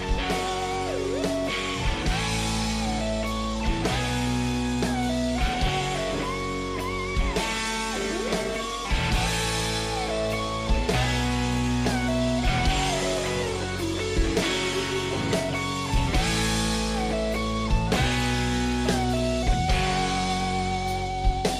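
A recorded rock song playing, with guitars, a melody line over held chords, and drums hitting at a regular pulse.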